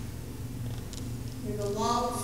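Low steady hum with a slight regular pulse, then a woman's voice begins speaking near the end.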